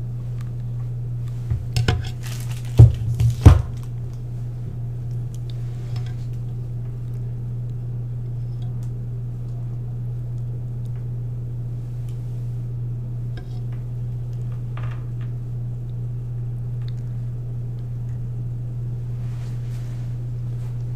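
Small hard plastic and metal parts of an LED stair-light set being handled: a quick run of clicks and knocks about two to three and a half seconds in, the loudest two near the end of that run. After it come a few faint clicks, all over a steady low hum.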